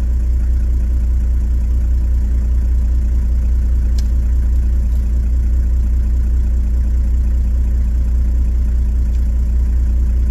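A stationary 4WD's engine idling steadily, a constant low hum. One faint click about four seconds in.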